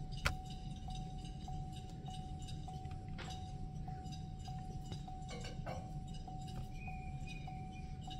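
A few sharp clicks of a computer mouse as an idle airflow table is edited on a laptop, one about a third of a second in and one about three seconds in. Under them runs a faint steady tone that pulses a little under twice a second, over a low hum.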